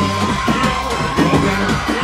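Loud drum-driven band music with a steady beat and bass line, and a held high note over it.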